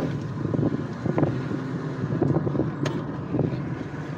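Moving car heard from inside the cabin: a steady engine and road rumble, with wind buffeting the phone's microphone and a sharp click near the end.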